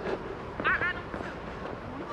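Outdoor ambience: steady background hiss with faint distant voices, and a quick run of three or four short high chirps a little over half a second in.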